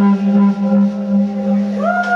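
A live band's electric instruments holding one sustained droning note with many overtones, a new tone sliding up into place near the end.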